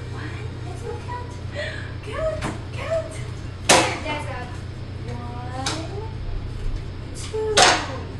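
Coins dropped into a glass jar: a few sharp clinks, the two loudest about four seconds apart, amid a small child's voice and family chatter.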